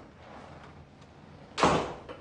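A wooden door, with a soft sound early on, then shut with one loud bang about one and a half seconds in.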